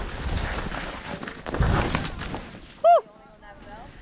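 Skis sliding down through deep powder snow with wind rushing on the microphone, a steady rushing noise with a heavy low rumble that swells in the middle. About three seconds in, a short voiced exclamation breaks in and the rushing dies down.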